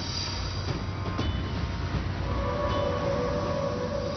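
Dramatic TV background score: a low rumbling drone, with steady higher held tones coming in about halfway through.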